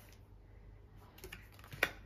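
Light clicks and taps of tarot cards being handled on a wooden table, fingertips and nails touching the laid-out cards: a few faint ticks about a second in and one sharper click near the end.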